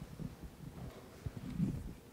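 Faint, low murmurs and soft thumps from a seated audience in a large hall, with no clear speech.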